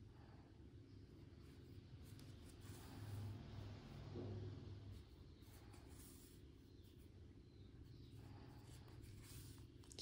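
Near silence: a faint low hum and soft rustling of yarn being drawn through crocheted stitches with a metal yarn needle, a little louder around three to four seconds in.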